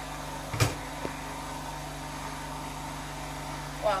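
A pot of yam and garden eggs boiling uncovered, with a steady hum and hiss, broken by one sharp knock about half a second in and a fainter click shortly after.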